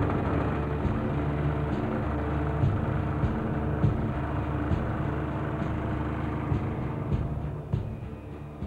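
Mase LX 1200M portable generator running steadily with a low engine hum.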